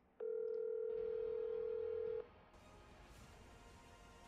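Telephone ringback tone heard over a phone's speaker while an outgoing call rings at the other end: one steady ring lasting about two seconds, then a faint hiss.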